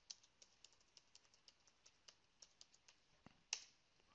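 Faint computer keyboard typing: a quick run of light keystrokes, then one firmer key press about three and a half seconds in.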